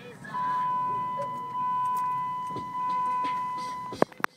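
A steady high-pitched tone held for about three and a half seconds, swelling three times, over the low running noise of a car.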